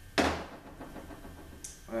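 A single sharp clunk of a transmission part set down on a workbench, with a brief ring-out, followed by low handling noise.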